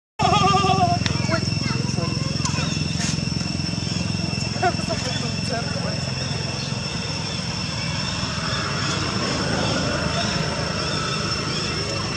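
Outdoor ambience: a few short pitched calls and squeaks in the first seconds, plausibly from the macaques and their newborns, over indistinct background voices. A steady high-pitched drone and a low rumble run underneath.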